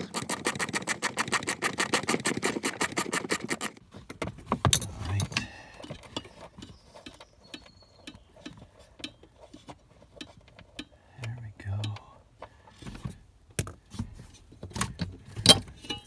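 A socket ratchet clicking rapidly and evenly as a nut is backed off, stopping about four seconds in. After that come scattered clicks, taps and a few low knocks of parts being handled.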